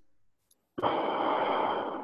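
A person breathing out with a long, heavy sigh, starting about three-quarters of a second in and lasting over a second.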